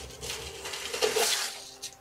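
Rubbing, rustling noise of a terracotta-potted chestnut tree being turned by hand on a turntable, starting about half a second in and loudest about a second in, over soft background music.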